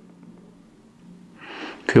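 A short pause with faint steady room hum, then a man's audible in-breath in the second half, just before speech resumes.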